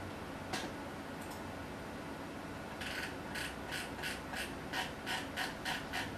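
Computer mouse clicking: a single click about half a second in, then from about three seconds in a run of about nine even clicks, roughly three a second.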